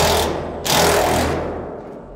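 Cordless Milwaukee impact driver hammering a bolt tight into a stover lock nut held with a wrench, in two bursts: the first cuts off just after the start, and the second begins a little under a second in and fades away.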